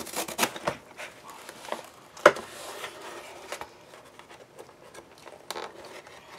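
Cardboard mailer box being opened and handled by hand: a few sharp cardboard clicks and taps, the loudest about two seconds in, with soft scraping and rustling between.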